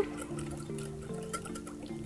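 Soft background music with held notes. Underneath it, a wire whisk beating an oil-and-lemon vinaigrette in a small bowl makes faint quick clicks and liquid sloshing.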